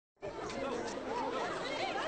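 Many young voices chattering and calling out at once, a babble of schoolchildren talking over one another.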